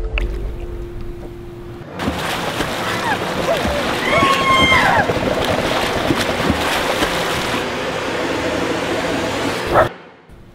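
Underwater rush of bubbles and churning water as a swimmer plunges into a pool, starting suddenly about two seconds in and cutting off abruptly just before the end. A short wavering pitched sound rises through the rush about halfway through.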